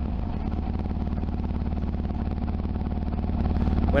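Yamaha XT225's single-cylinder four-stroke engine idling steadily, its throttle rolled off so that it runs on the carburetor's idle circuit.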